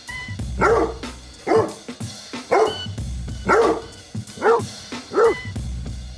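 A basset hound barks six times, about once a second, over background music with a drum beat.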